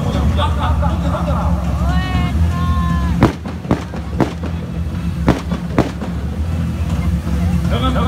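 Five sharp gunshot cracks over about three seconds in the middle, fired singly and in pairs about half a second apart. These are blank rounds in a staged combat demonstration, heard over a steady low rumble.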